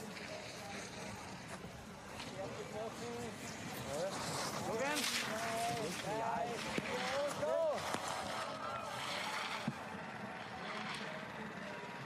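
Giant slalom skis carving and scraping over hard snow in rhythmic surges of hiss as the racer turns through the gates, with spectators shouting and cheering in short rising-and-falling calls in the middle of the stretch.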